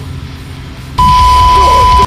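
A loud electronic beep tone, a single steady pitch with static and a low rumble under it, cutting in suddenly halfway through and lasting about a second. Before it, quiet background music.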